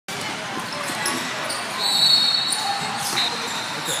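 Basketball game in a large gym: a crowd talking and calling out, with a basketball bouncing on the court. A short high squeak comes about two seconds in.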